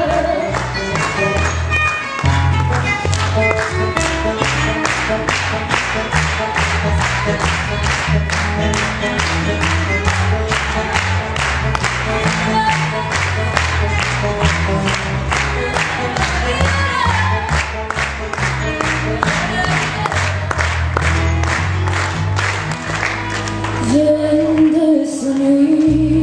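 Fado accompaniment on Portuguese guitar and classical guitar with bass notes, played as an instrumental passage with an even plucked rhythm. A woman's singing voice comes back in near the end.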